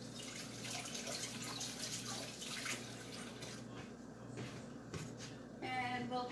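Eggs frying in hot oil in a nonstick pan: steady sizzling with many small crackles and pops, busiest in the first half and thinning out later.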